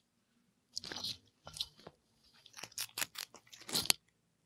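Pet rabbit chewing and crunching food: irregular runs of crisp clicks with short silent pauses, the densest run near the end.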